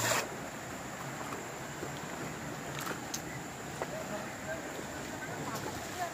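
Shallow river running over rocks: a steady rush of flowing water, with a few faint clicks scattered through it.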